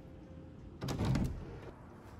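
An interior door being pushed open, with one short scraping sound of about half a second about a second in.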